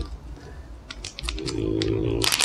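Crinkly plastic treat bag being handled and opened by hand, a run of short crackles. A low, steady drone starts about halfway through and runs on.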